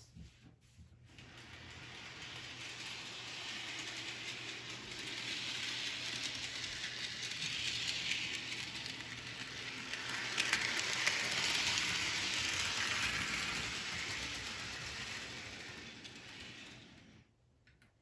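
HO-scale model of Edward from Thomas & Friends running on its track pulling a coach: a steady whir of the small electric motor and wheel noise on the rails. It grows louder towards the middle and fades away near the end.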